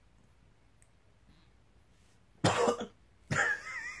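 A man coughs sharply after a sip of coffee soda he finds disgusting, then starts to laugh about a second later. The first two seconds are nearly silent.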